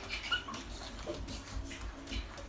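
Bare feet thudding on the floor as two children jump while dancing: irregular thumps a few times a second, with a few short high squeaks between them.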